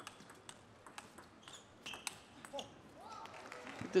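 Table tennis ball struck back and forth in a rally: light, sharp clicks of the ball on the bats and table, about two or three a second.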